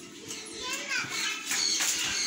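Children's voices chattering and calling out in the background.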